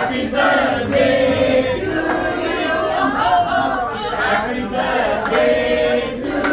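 A group of people singing together in chorus, with held notes and a few hand claps.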